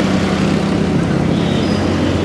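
A motor vehicle's engine running steadily with a low, even hum.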